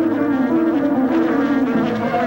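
Honeybees buzzing around a hive: a steady droning hum that wavers slightly in pitch.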